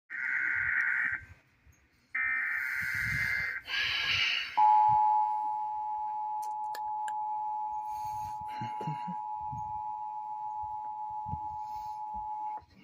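Emergency Alert System broadcast signal on a TV: bursts of buzzy SAME digital header tones, then about a second before the halfway mark the loud, steady two-tone EAS attention signal (853 and 960 Hz) starts and holds. It marks a severe thunderstorm warning being issued.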